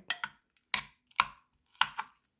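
Four sharp kitchen knocks about half a second apart: a utensil striking a hard surface, each with a brief ring.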